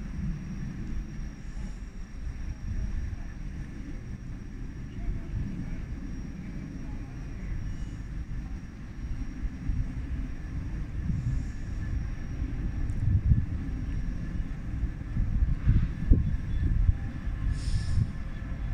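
Low, uneven rumble of a train standing at a station platform, with a faint steady high-pitched whine above it.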